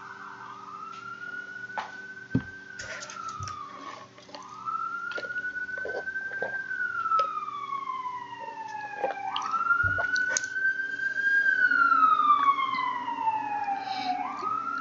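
Emergency-vehicle sirens wailing outside: a tone that rises quickly and then falls slowly, in three cycles of about four to five seconds each. In the second half a higher siren tone falls alongside it.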